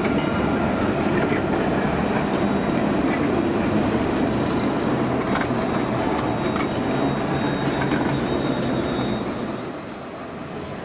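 Alstom Citadis 402 low-floor tram passing close by at low speed: a steady rumble of wheels on rails, with a faint high whine above it. The sound drops away near the end.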